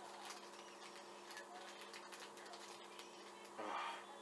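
Faint crinkling and small clicks of a plastic marshmallow bag as a hand reaches in and pulls out a marshmallow, over a low steady hum.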